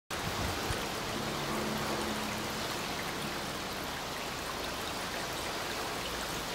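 Water running and trickling steadily over the tiers of a three-tier garden fountain.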